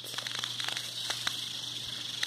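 Room tone through a phone microphone: a steady hiss and low hum, with scattered faint clicks and light rustling.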